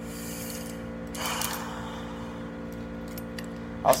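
Steady hum of a humidifier running, with rustling and a few light clicks as fishing rods and reels are handled, including a brief scraping rustle about a second in.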